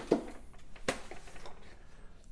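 Handling noise from a plastic robot vacuum being lifted and turned over: a light knock at the start and one sharp click a little under a second in, with faint rustling between.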